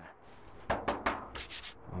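Footsteps rustling through grass and weeds, a few short brushing and scraping bursts.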